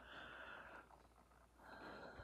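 Near silence: faint breathing of a man pausing between phrases, two soft breaths, one at the start and one near the end.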